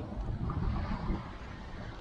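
Wind buffeting the microphone: a steady low rumble with faint hiss above it.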